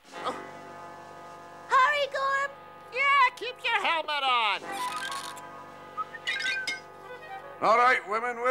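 Cartoon background music with held notes under short wordless vocal exclamations from the characters. A steep falling glide comes a little after four seconds in, and voices pick up again near the end.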